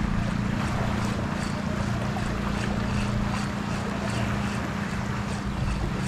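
A steady low hum over a wash of wind and lapping sea water around shallows, with faint soft ticks throughout.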